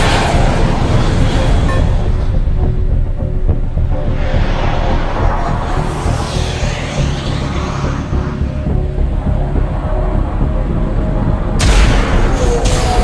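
Tense, dark film score over a steady low rumble, with a sudden loud blast near the end.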